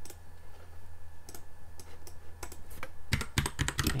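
Computer keyboard typing: a few separate clicks, then a quick run of keystrokes in the last second as the ping command is typed.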